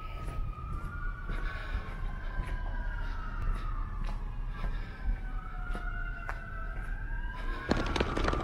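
A siren wailing, its pitch slowly rising and falling with two tones overlapping, over a steady low rumble and scattered light clicks.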